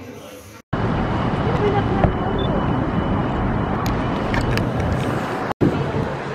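A loud, steady outdoor rumble of background noise, with much of its weight low down. It starts suddenly about half a second in and stops suddenly just before the end.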